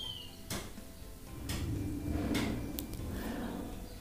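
Omelette mixture of egg and shredded cabbage being scooped with a steel spoon from a ceramic bowl into an oiled non-stick frying pan. Several sharp clicks of the spoon against the bowl, with a soft rushing sound for about two seconds in the middle as the mixture goes into the pan.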